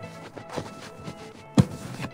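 Soft background music with a single sharp knock about one and a half seconds in, as an aluminum compression bar is worked out of the hardwood seat frame.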